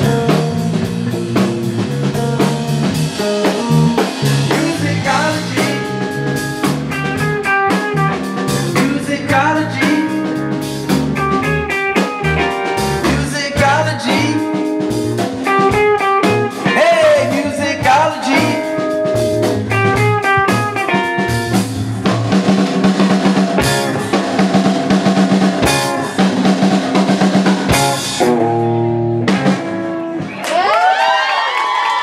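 Live band playing an instrumental funk groove on electric guitar, electric bass and drum kit, with a busy guitar line over the bass and drums.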